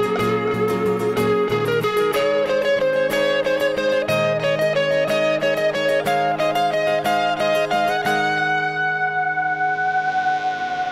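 A small live band playing on acoustic guitar, electric guitar and upright piano: quick picked notes over a steady bass line, until about eight seconds in a final chord is held and left ringing.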